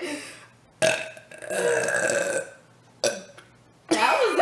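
A long, loud burp starting about a second in and lasting nearly two seconds, followed by a brief short sound just after three seconds.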